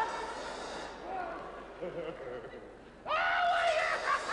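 A man's voice making wordless, drawn-out wailing cries, with a quieter stretch in the middle and a long, loud cry about three seconds in.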